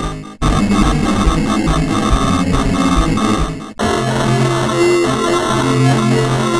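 Heavily distorted, layered cartoon soundtrack audio: music and effects stacked into a harsh cacophony. It cuts out abruptly twice, about half a second in and near four seconds, then goes on with steady low droning tones.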